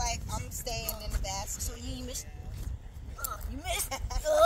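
Indistinct voices talking, not picked up as words, over a steady low rumble.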